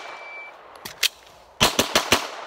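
Glock pistol fired in a fast string of shots near the end, three or four cracks in about half a second. The echo of earlier shots fades before them, and a quieter crack comes about a second in.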